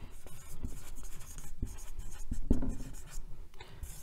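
Felt-tip marker writing on a whiteboard: a quick run of short, irregular pen strokes as a word is written out.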